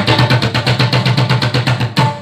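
Tabla played in a fast, even run of strokes, about ten a second, with the bass drum's deep ring under the sharper strokes: a drum passage between sung verses of a Pashto tapay song.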